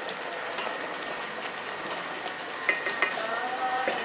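Steady hissing and bubbling of spaghetti boiling hard in an aluminium pot on the stove.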